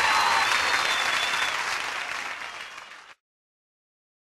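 Crowd applauding and cheering, fading out and then cutting off to silence about three seconds in.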